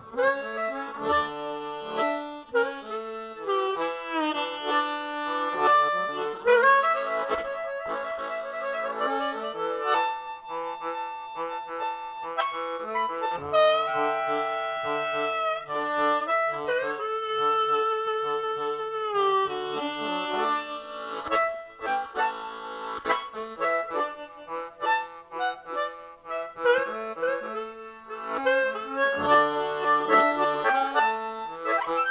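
Two layered harmonica parts playing a blues instrumental break between verses, with chords, held notes and bent notes that slide in pitch.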